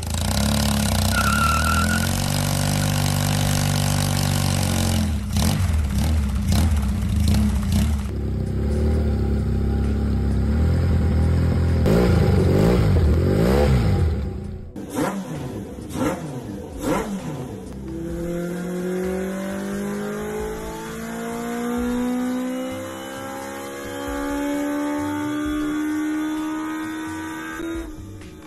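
Custom Kawasaki KZ750 cafe racer's engine idling steadily, then revved hard several times with quick throttle blips. About eighteen seconds in it pulls away, its pitch rising through three gears as it accelerates.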